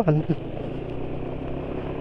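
Yamaha scooter riding at low speed on a brick-paved road: steady engine and tyre noise.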